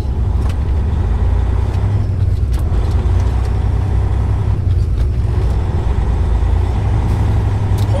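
Semi truck's diesel engine running with a steady low rumble, heard from inside the cab.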